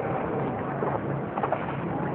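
Steady hiss and low hum of an old lecture recording, with a few faint, short calls in the background, about a second and a second and a half in.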